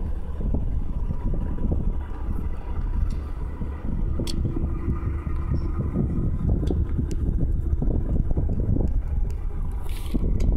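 Union Pacific diesel locomotive running with a steady low rumble as it moves slowly past, with wind buffeting the microphone.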